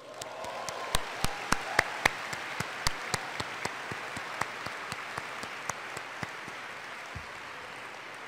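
Audience applause, with sharp, louder single claps close to the microphone from the speaker clapping at the podium. The close claps are strongest in the first couple of seconds and then thin out, while the applause fades slightly toward the end.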